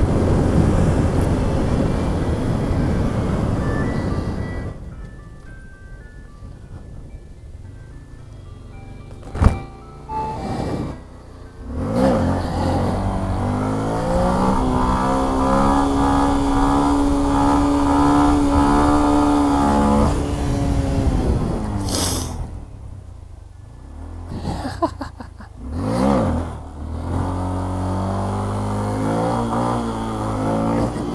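Motorcycle riding noise with wind rush for the first few seconds. Then, in a quieter stretch, comes a short electronic tune of stepped notes, and from about twelve seconds a long held tone that glides up, holds steady for about eight seconds and glides back down.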